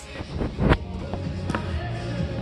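A phone being handled and set down on a hardwood floor: a dull thud about two-thirds of a second in, then a sharper tap about a second later, over music playing in the room.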